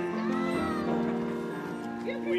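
Grand piano playing held chords, with a brief call that rises and then falls in pitch over it during the first second.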